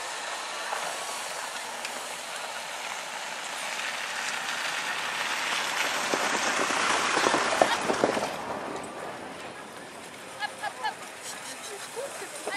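A pair of ponies pulling a sleigh over snow: hooves and runners make a hissing rush that swells to a peak in the middle, with some short thuds, then fades.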